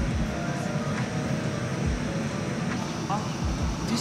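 Steady low rumble of an airliner cabin parked at the gate, with indistinct voices in the background.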